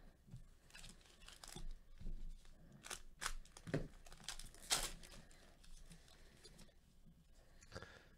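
A 2019 Panini Chronicles baseball card pack's foil wrapper being torn open and crinkled by gloved hands, a faint run of sharp crackles that thins out near the end.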